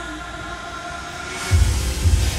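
Background music: a held chord of several steady tones, then a heavy bass beat comes in near the end.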